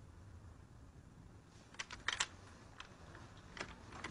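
Faint sharp clicks and taps in a quiet room, a quick cluster of several about two seconds in and a couple of single ones near the end.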